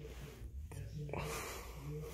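A person whispering or talking under their breath, faint and low.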